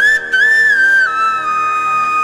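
Devotional music: a high flute melody sliding through a few ornamented notes, then settling on one long held lower note about a second in, over a steady drone.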